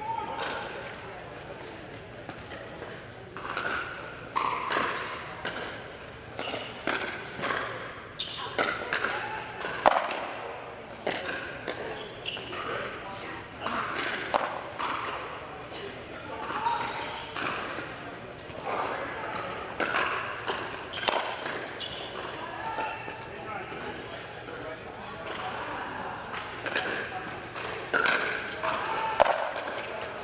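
Indistinct voices echoing in a large indoor hall, broken by frequent sharp pops and bounces of pickleballs off paddles and court surfaces, the loudest about ten seconds in.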